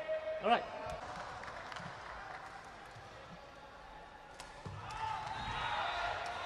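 A few scattered, sharp taps of a sepak takraw ball against feet and the court, over quiet indoor hall noise that rises near the end.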